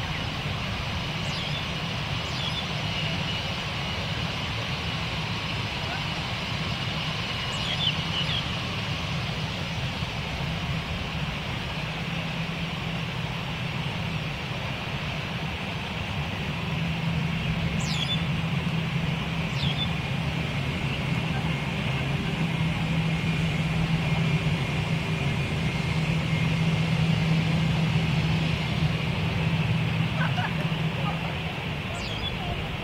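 Twin-engine Airbus A320-family jet airliner taxiing at low thrust, a steady engine drone that grows louder over the second half as the aircraft comes closer and turns onto the runway.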